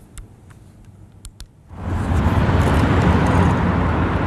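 A quiet stretch with a few faint clicks, then a loud, steady rumbling noise sets in just under two seconds in: outdoor ambient sound from earthquake-rubble footage, machinery or traffic-like.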